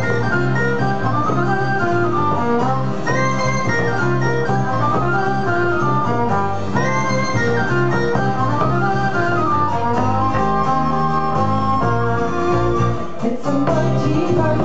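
A live acoustic band playing an instrumental passage, with a fiddle and other melody lines sliding and moving over plucked strings and a steady bass line.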